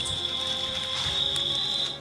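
One steady, high-pitched insect call, cricket-like, that cuts off suddenly at the end, over faint background music.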